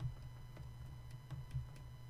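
A few faint, scattered ticks of a stylus tapping and dragging on a drawing tablet while writing, over a steady low hum.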